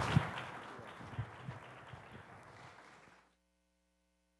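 Audience applause dying away, with a few last separate claps, the sound fading steadily and dropping to silence a little over three seconds in.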